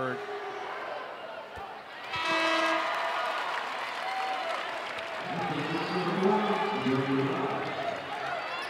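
Basketball arena crowd cheering, rising sharply about two seconds in as a free throw drops, with a short held horn-like tone over it. Voices carry in the crowd noise later.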